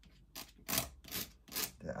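Ink drawing tool scratching across paper in about five short strokes.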